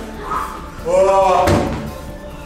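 A person's loud, drawn-out cry of about half a second, ended by a single sharp thump about a second and a half in.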